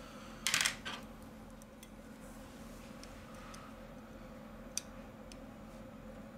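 A quick cluster of sharp plastic clicks about half a second in, then one more single click near the end, as the lower plastic cover is pressed and snapped into place on a smartphone's frame, over a faint steady hum.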